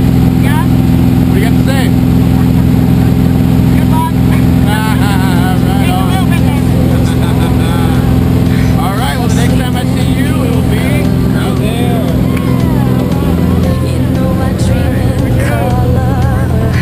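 Small single-engine skydiving plane's piston engine and propeller droning loud and steady inside the cabin, the engine note shifting slightly about three-quarters of the way through. Voices shout over it.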